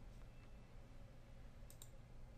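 Near silence with faint room tone, and a faint click of a computer mouse button near the end as a menu item is selected.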